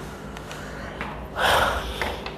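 A person breathing out once, a short, sharp huff about a second and a half in.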